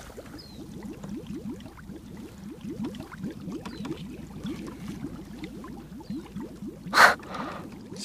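Water gurgling and bubbling, a steady run of quick short rising bubble sounds, with a brief loud splash-like rush of noise about seven seconds in.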